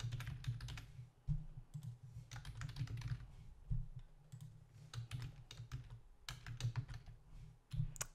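Typing on a computer keyboard: irregular runs of keystroke clicks with short pauses between them, over a low, uneven rumble.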